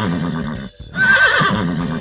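Horse whinny sound effect coming from a cartoon ambulance's faulty siren loudspeaker in place of its siren call, heard as two quavering neighs with a short break just under a second in.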